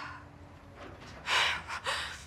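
A woman's sharp, tearful gasp of breath while crying, about a second and a half in, followed by a shorter second one.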